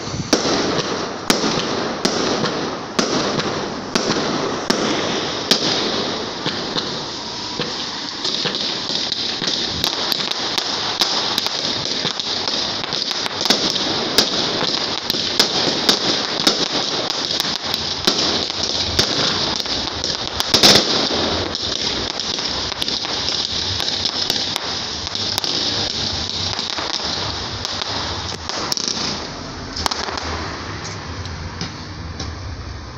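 Fireworks display going off: a dense, steady crackle of bursting aerial fireworks, broken by many sharp bangs. The loudest bang comes about two-thirds of the way through.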